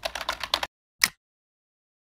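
Typing sound effect: a quick run of keyboard-like clicks, then dead silence with one last click about a second in.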